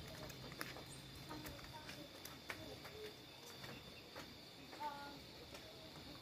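Faint footsteps and light knocks, with brief snatches of distant voices and a steady high-pitched whine underneath.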